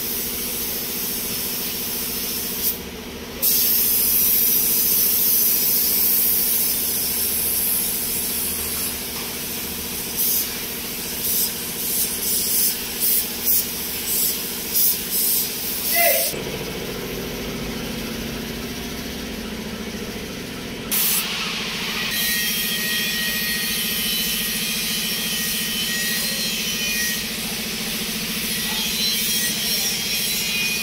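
Compressed-air paint spray gun hissing as paint is sprayed onto a mini bus body, mostly in long steady passes, with a run of about ten short trigger bursts midway, over a steady low hum.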